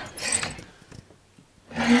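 Wooden overhead cabinet door on a 1978 GMC motorhome being handled and lifted open: short rustling and hinge noises, a brief lull, then more noise near the end.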